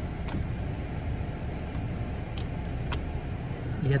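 Steady low rumble of a car heard from inside the cabin, with a few faint ticks.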